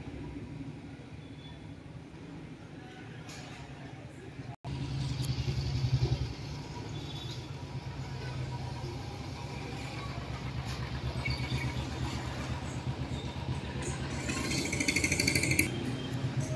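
An engine running steadily, a low rumble with a fine regular pulse. It cuts out for an instant about four and a half seconds in and comes back louder.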